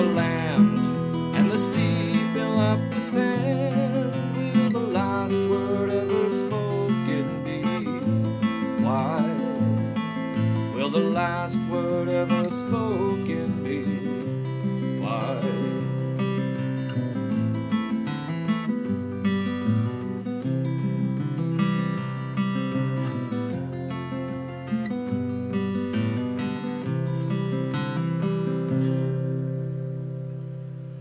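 Seagull Natural Elements Mini Jumbo acoustic guitar (solid spruce top, wild cherry back and sides) being picked through a chord pattern, single notes ringing over bass notes. The playing dies away near the end as the last notes ring out.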